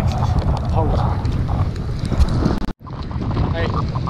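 Strong mountain wind buffeting the camera's microphone, a heavy, steady low rumble. It cuts out for an instant about three-quarters of the way through, then carries on as strongly.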